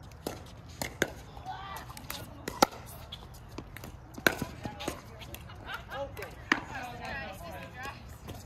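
Pickleball paddles striking a hard plastic pickleball during a doubles rally: a series of sharp pocks one to two seconds apart, the loudest about two and a half, four and six and a half seconds in. Faint voices talk in between.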